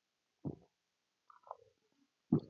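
A man drinking from a glass: a short, faint gulp about half a second in, then a brief falling hum of the voice after about a second and a half.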